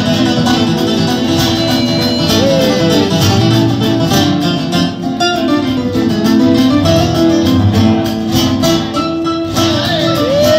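Live acoustic guitar music: guitars plucking and strumming an instrumental passage of a song.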